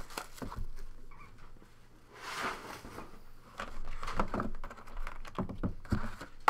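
Hands handling a cardboard trading-card box and a clear plastic card case: a soft rustle a little over two seconds in, then a series of light clicks and taps.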